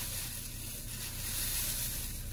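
White plastic shopping bag rustling and crinkling as two glass jar candle holders are pulled out of it, a steady rustle that dies away at the end.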